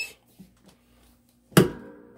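MPress 15x15 clamshell heat press clamped shut by its handle: a single sharp metallic clunk about one and a half seconds in as the heated platen locks down, with a brief ring after it.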